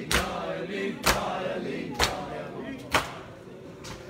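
A crowd of men beating their bare chests with their palms in unison during matam, about one sharp slap a second, with chanted voices between the strokes. The strokes weaken and stop near the end.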